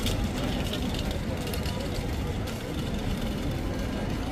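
Busy street ambience: a crowd's voices chattering over a steady low rumble of traffic.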